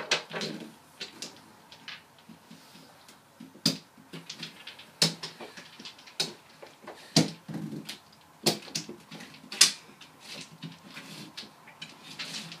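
Mahjong tiles clacking against each other and the table as players draw tiles from the walls: irregular sharp clicks, a few louder knocks among them.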